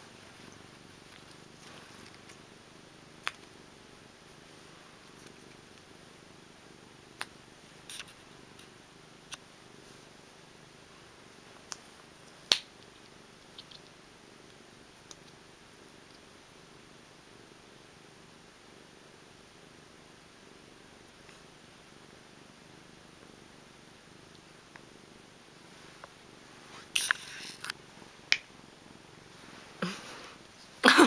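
A cat purring steadily, with a few sharp clicks scattered through and a short cluster of clicks near the end.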